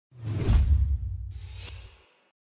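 Whoosh sound effect for an animated title: a deep swoosh with a heavy low rumble peaking about half a second in, then a second, hissier swish a second later, dying away.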